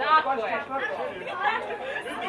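Spectators chatting close to the microphone, several voices talking, loudest just at the start.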